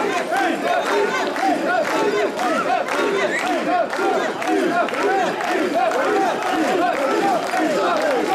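Mikoshi carriers chanting the rhythmic carrying call in a loud mass of men's voices, short shouted calls repeating quickly and overlapping as they shoulder the portable shrine.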